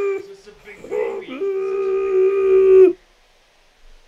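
Dog howling while being carried to a bath: a held cry that ends just after the start, a short one about a second in, then a long steady howl of about a second and a half that cuts off suddenly near the end.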